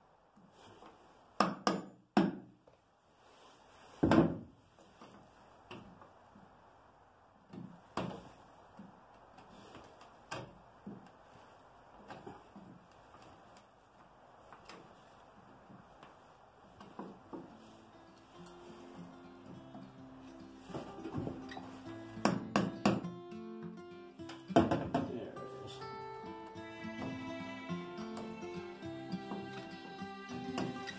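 A hammer striking the back of a screwdriver seated in an old screw in a wooden boat's plank, a few sharp blows with the loudest in the first five seconds and lighter knocks every second or two after: shock-loosening a rusted zinc-plated screw so it can be backed out. From about twenty seconds in, plucked guitar music comes in under the knocks.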